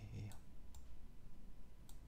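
A couple of faint, sharp clicks over a low steady hum, right after a last spoken syllable.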